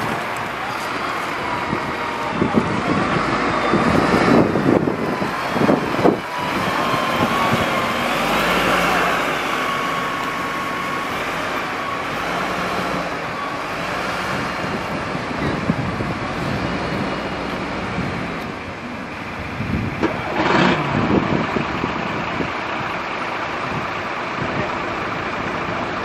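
Bristol Lodekka FS6G double-decker's Gardner six-cylinder diesel engine pulling away, mixed with the engines of other buses running in the same yard.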